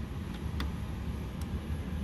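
A few faint clicks as multimeter probe tips are worked into the screw terminals of a zone control panel, over a steady low hum.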